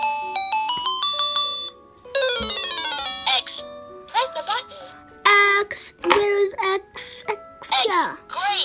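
Children's electronic learning laptop toy playing a beeping tune of stepping tones, then a fast run of electronic tones about two seconds in. From about three seconds in, short spoken bursts follow.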